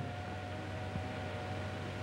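Steady hiss with a low hum and a faint high held tone that fades out near the end, the background noise of an old film soundtrack. There is no chuffing or wheel-beat rhythm from the passing train.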